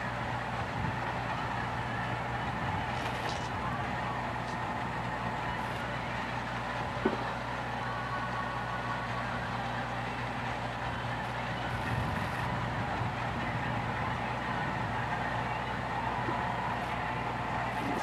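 A steady machine-like hum with an even hiss, unchanging throughout, and a single short click about seven seconds in.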